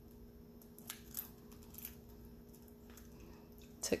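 A few faint clicks and taps of a metal watch band and watch case being handled and unclipped, over a low steady hum.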